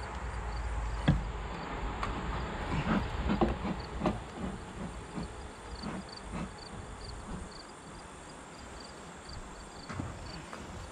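Wooden beehive parts being handled and set in place: knocks and clatter of the screened inner cover and telescoping lid against the wooden hive boxes, the sharpest knock about a second in and a cluster of knocks around three to four seconds in, thinning out after six seconds.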